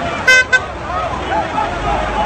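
A horn sounds twice near the start, a short blast and then a shorter one, over a crowd chanting.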